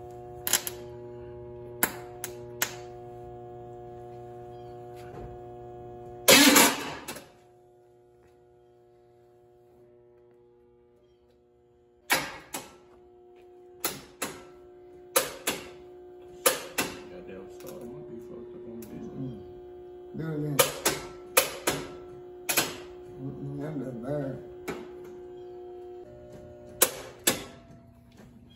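Electric fuel pump running with a steady hum while it is powered by hand from the battery through a clip lead, with sharp clicks as the lead touches and leaves the terminal. A loud snap comes a few seconds in, the hum stops for several seconds, then comes back and runs on.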